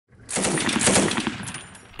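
Machine gun mounted on a pickup truck firing a burst of rapid automatic fire, starting a moment in and tailing off in the second half.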